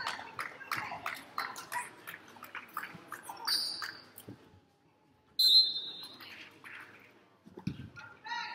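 Gym basketball game sounds: quick sneaker squeaks and scattered voices for the first few seconds. About five and a half seconds in comes a sudden, loud, shrill referee's whistle blast, and a low thud near the end.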